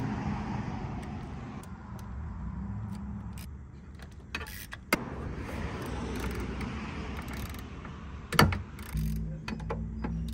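Hand ratchet and extension working valve cover bolts on an engine: scattered metal clicks and clinks, with one loud knock near the end, over background music.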